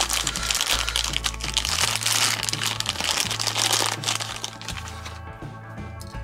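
Thin clear plastic bag crinkling and crackling as a small die-cast toy truck is worked out of it, dense for about five seconds and then dying down. Background music plays throughout.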